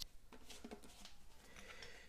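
Faint plastic clicks and rubbing as the cup of a plastic washbasin bottle trap is screwed on by hand, with one sharper click at the very start.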